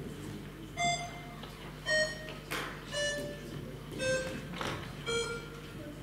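Electronic voting system signal while a vote is open: single electronic tones about once a second, each a step lower in pitch than the last.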